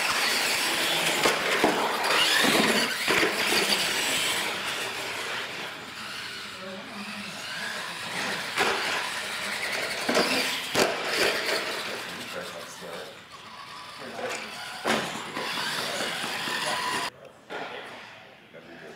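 Radio-controlled monster trucks racing side by side on a hard floor: motors whining and tyres squealing, with a few sharp knocks as they hit a wooden jump ramp and land. The noise drops off suddenly near the end.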